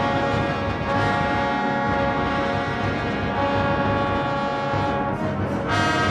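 Wind and percussion orchestra playing loud, held brass chords. The chord changes about every two and a half seconds.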